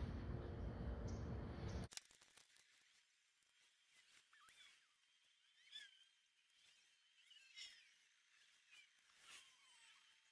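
Near silence: faint outdoor background noise that cuts off abruptly about two seconds in, leaving only a few faint, short high chirps.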